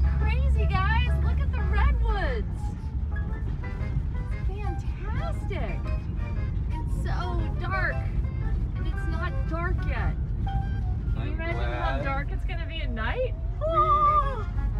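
Steady low rumble of a VW Vanagon Westfalia camper van driving on a dirt road, with voices over it, including held, sung-sounding notes near the end.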